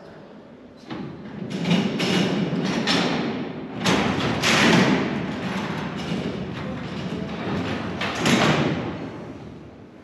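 Steel cell doors rolling along their tracks and banging shut, a run of heavy metallic strikes and rumbles, the loudest about four to five seconds in and again near the end, each ringing out in the echo of a large hall.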